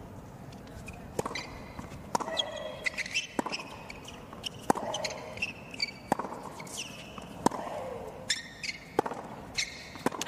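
Tennis rally: a ball struck back and forth with rackets, about eight sharp hits some 1.3 seconds apart.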